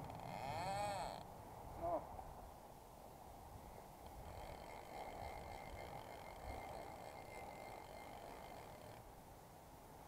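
Faint steady rush of river water and wind outdoors, with a brief pitched call that rises and falls just after the start and a shorter one about two seconds in.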